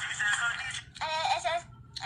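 A girl singing in short phrases, heard through a phone's speaker on a video call.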